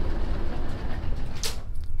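Steady low rumble of background ambience, the machine hum of a laboratory in a sound-designed audio drama, with a brief sharp noise about a second and a half in.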